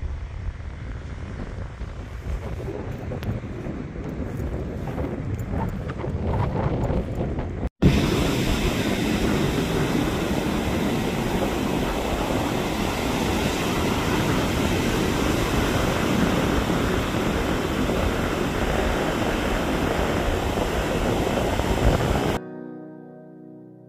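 Wind buffeting the microphone, with distant surf behind it. After a cut about eight seconds in, ocean waves break close by on the shore in a loud, steady rush of surf.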